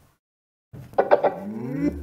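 JBL Charge 3 portable speaker's power-on sound: a gliding electronic tone lasting about a second, starting under a second in. A low hum starts near the end.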